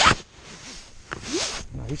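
Jacket fabric rubbing and scraping against the camera's microphone: a sharp rustle at the start and a longer swish about a second and a half in.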